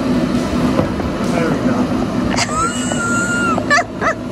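Electric bounce-house blower running steadily, a constant low drone as it inflates the bounce house. About two and a half seconds in, a brief high-pitched tone rises, holds for about a second and falls away, and voices come in near the end.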